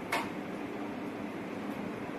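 Steady background noise of a small room, with one brief click or rustle just after the start.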